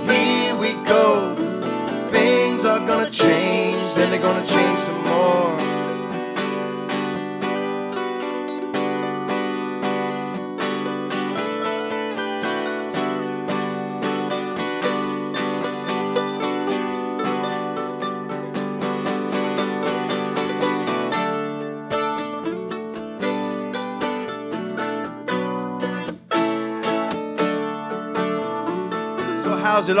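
A live acoustic band's instrumental passage: mandolin and acoustic guitar playing together steadily, with a brief drop in level a few seconds before the end. A singer comes back in at the very end.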